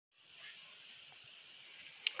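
Faint outdoor background: a steady hiss with two brief, very high chirps a little over half a second in.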